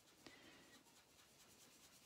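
Near silence with a very faint rubbing of a dry baby wipe dabbing ink through a paper stencil onto card, and one small tick about a quarter second in.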